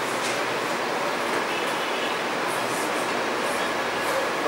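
Steady room hiss with a few faint swishes of a marker drawing lines on a whiteboard.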